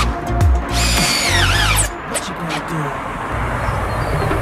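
Cordless drill running against a brick wall. Its high whine falls in pitch as it slows about a second and a half in. Background music plays throughout.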